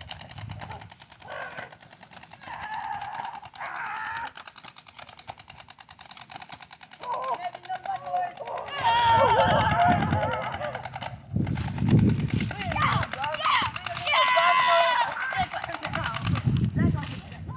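Young voices shouting and yelling without clear words: a few faint calls at first, then loud, sustained yelling through the second half.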